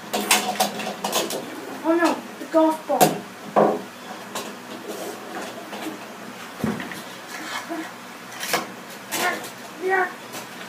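Toys being handled and knocked against a wooden tabletop: a cluster of sharp clicks and knocks at the start, more around three seconds in and again near the end, with short snatches of a voice in between.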